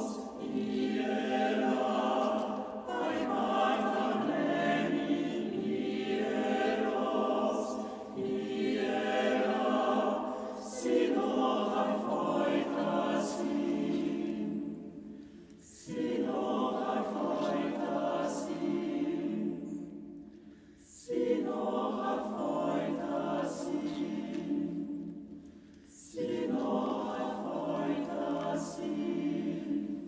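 Chamber choir singing a cappella in long sustained chords, in phrases a few seconds long. Each phrase ends in a brief fading tail in the reverberation of a stone cathedral.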